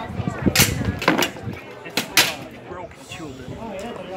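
Sharp clashes of steel weapons striking plate armour and a shield in armoured combat: about five blows in the first two and a half seconds, over crowd voices.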